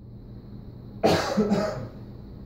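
A person coughing once, in two quick bursts about a second in: a deliberate cough used as a conditioning cue that signals an M&M is about to be offered.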